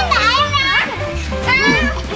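Young children's high-pitched voices over background music with a steady low bass.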